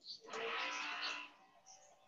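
A neighbour's power tool heard faintly over a video-call microphone: a droning, eerie hum made of several steady tones, odd enough to be taken for a sci-fi film score. It comes in shortly after the start and fades out after about a second.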